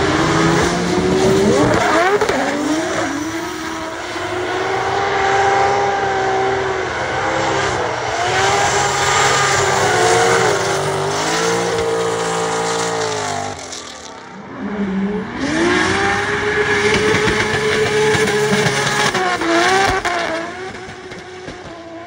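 Turbocharged 2JZ straight-six of a Nissan Silvia S14 drift car held at high revs, its pitch rising and falling again and again as the throttle is worked, over the squeal and hiss of spinning rear tyres. The sound drops briefly about two-thirds of the way through, then climbs again as the car comes past.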